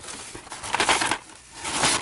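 Rustling and crinkling of a reusable tote bag and the blister-packed toys inside it as a hand rummages through, in two bursts, one about half a second in and one near the end.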